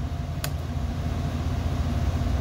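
Steady low background rumble, with a single sharp key click about half a second in as a keyboard key is pressed to confirm a menu choice.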